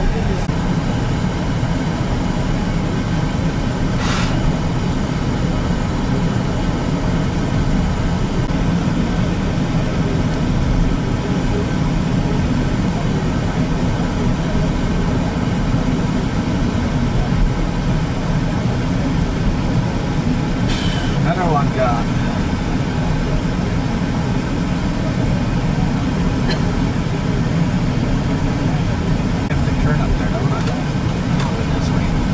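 Steady low rumble of a car's engine and tyres on the road, heard from inside the moving car's cabin, with a few brief clicks.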